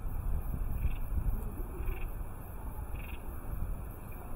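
Low outdoor rumble of wind, with three faint, brief high-pitched sounds about a second apart. No clear chime ring stands out.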